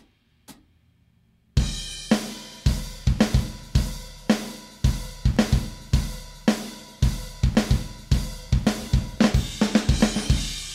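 Playback of a multi-mic live drum kit recording that has been sliced and quantized, with kick, snare, hi-hat and cymbals in a steady beat starting about a second and a half in. Because no crossfades have been applied yet, small clicks and pops can be heard at the unclean edit points.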